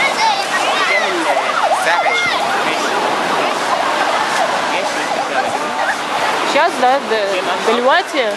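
Surf breaking and washing up a sandy beach in a steady rush, with beach-crowd voices and children's high-pitched calls over it, strongest near the start and again near the end.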